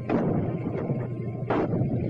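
37 mm anti-tank gun M3 firing: a sharp report right at the start that trails off, and a second sharp bang about one and a half seconds in. A steady low hum runs underneath.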